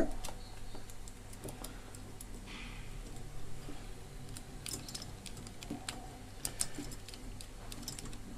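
Faint scattered light clicks and rattles of test leads and a plastic electrician's terminal strip being handled on a tabletop. There is a brief scratch a little over two seconds in, and a quicker run of clicks in the second half.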